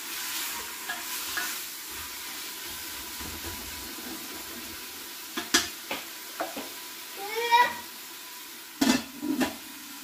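Beef sizzling as it browns in an aluminium pressure-cooker pot, with a spoon stirring and knocking sharply against the pot a couple of times. A short rising-and-falling tone sounds briefly about seven and a half seconds in.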